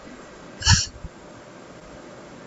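A single short chuckle from a person, a little under a second in, over quiet room tone.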